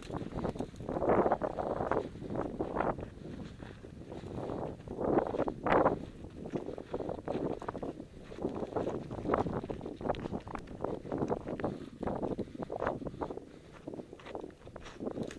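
Wind buffeting the microphone in uneven gusts, mixed with footsteps on loose rock and gravel as the wearer walks downhill.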